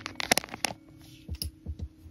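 Light clicks and knocks, then a few soft thuds, from plastic dolls and toy props being handled and moved on a tabletop set.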